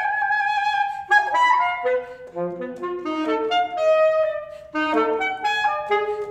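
Solo alto saxophone: one held high note, then a quick run of short, separate notes leaping up and down, with a brief break near the end before the notes resume.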